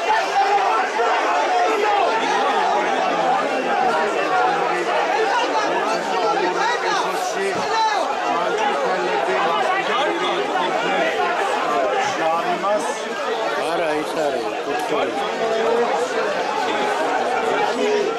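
Crowd chatter: many voices talking over one another in a steady babble, no single voice standing out.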